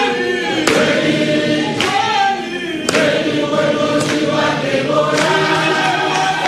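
A large crowd singing a song together in chorus, with a sharp beat about once a second.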